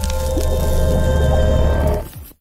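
Logo intro music: sustained chord tones over a heavy, steady bass, with a splattering sound effect for the ink-splash reveal.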